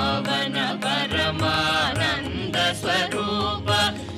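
Carnatic-style singing with accompaniment: a voice sings gliding, bending phrases over steady sustained low notes, with a deeper accompanying part coming in about a second in.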